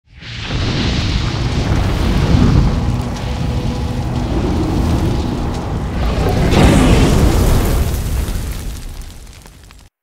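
A dense, rumbling explosion-like intro sound effect under a faint low drone, swelling about two seconds in and again about six and a half seconds in, then fading away just before the end.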